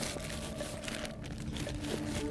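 Crinkling plastic of a vacuum-packed deadbait pack as it is handled and stowed in a rucksack.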